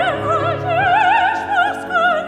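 Operatic soprano singing with wide vibrato, moving through several notes, accompanied by a C. Bechstein grand piano whose lower notes fade out about a second in.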